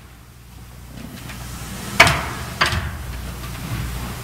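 Two sharp knocks about half a second apart, the first the louder, echoing in a large hall over a low rumble that builds in the first two seconds.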